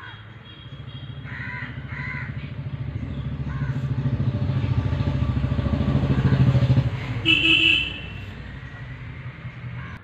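A vehicle engine running close by, getting louder over about six seconds, then dropping away about seven seconds in, followed by a short horn honk. Crows caw briefly about a second and a half in.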